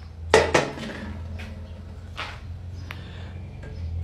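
Knocks and clinks of a metal mini beer keg and a glass being handled on a tiled counter: two sharp knocks within the first second, then a few fainter clicks. A low steady hum runs underneath.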